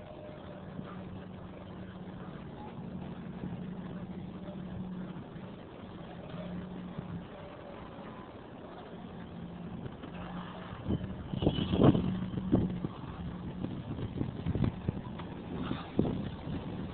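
Road traffic running steadily, a continuous low hum of cars and engines. A few louder, sharper bumps stand out about three-quarters of the way through.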